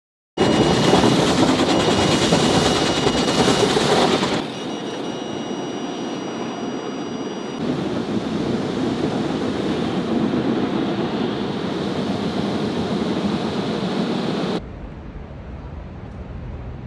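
Water spraying and streaming over a car's windshield in an automatic car wash, heard from inside the car as a loud, steady rush with a few thin high-pitched tones over it. Near the end it drops suddenly to a quieter low hum.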